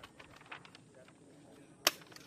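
Paper rustling and crinkling as a sheet is handled and pressed against a paper range target, then one sharp, loud crack near the end.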